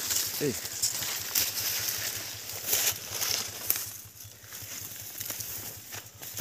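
Dry grass and dead leaves rustling and crackling in short scattered bursts as someone pushes through brush, dying down after about four seconds.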